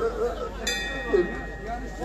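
Speech only: a man talking softly between louder phrases, with a brief click about two-thirds of a second in.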